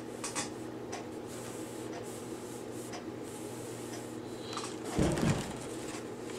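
Clothes iron held pressed on a paper towel over a silicone mat to heat-set crayon on fabric: faint scrapes and small clicks under a steady low hum, then a louder rustle and bump about five seconds in as the iron comes off and the paper towel is handled.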